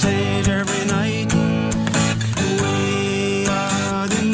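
Acoustic guitar strummed under a singer holding long, wavering notes.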